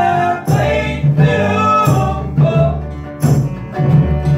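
Live acoustic string-band music: upright bass and strummed acoustic guitar keeping a steady beat, with a man singing held notes over it.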